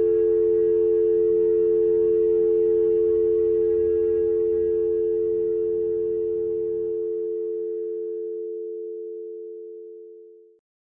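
Telephone dial tone: a steady two-note hum left on an open line with no one answering, slowly fading out. Faint background music runs beneath it and dies away about three-quarters of the way through.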